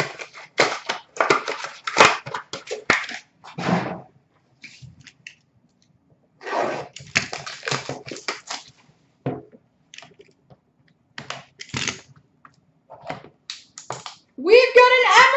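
Crinkly plastic wrapping on a box of hockey cards being handled and torn open, in several bursts of crackling with short pauses between them.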